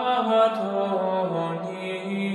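Gregorian chant sung in unison by low voices, a slow line of held notes that moves from one pitch to the next.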